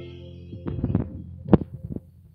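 Handheld microphone handling noise: a cluster of bumps about a second in, then one loud thump as the mic is moved away from the mouth, over the last held chord of a karaoke backing track.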